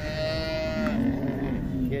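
A cow mooing: one long call that starts higher and drops lower about a second in.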